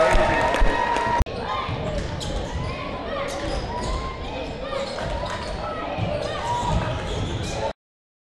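Basketball being dribbled on a hardwood gym floor amid unintelligible crowd chatter in a gymnasium. The sound cuts off abruptly shortly before the end.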